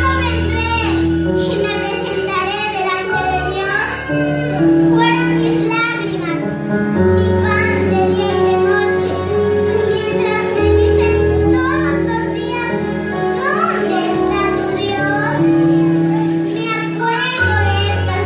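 A child singing a psalm into a microphone, accompanied by an electronic keyboard playing held bass notes and chords that change every few seconds.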